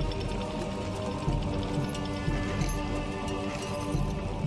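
Video slot game soundtrack music with held tones over a steady low beat.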